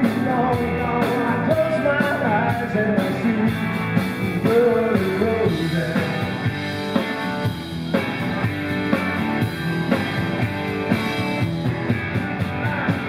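Live rock band playing: distorted electric guitars over a drum kit, with a bending melodic line standing out in the first five seconds.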